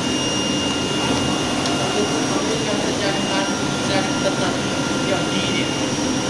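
Automatic flatbed cutting table running steadily: its vacuum hold-down blower gives a constant rushing noise with a thin high whine over it.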